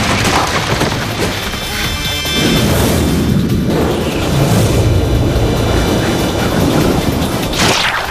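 Action-film soundtrack: dramatic music with low booms, and a crash of breaking rock near the start.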